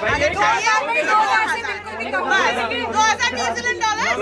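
Several people talking over one another: crowd chatter. Background music cuts off right at the start.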